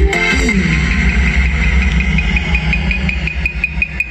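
Loud instrumental backing music through a stage PA: a heavy pulsing bass beat with a fast, steady ticking on top, and no singing.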